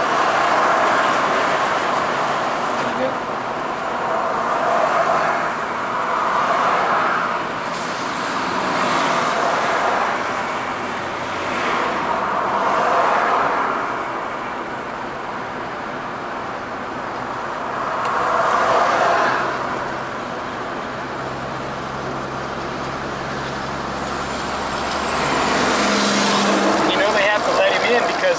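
Road noise of a car driving, with other road vehicles passing close by in swells every few seconds.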